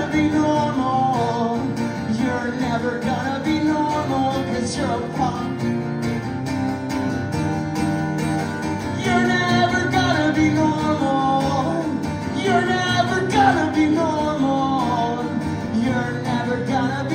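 Acoustic guitar strummed steadily in a live folk-punk song, with a man's singing voice over it in passages.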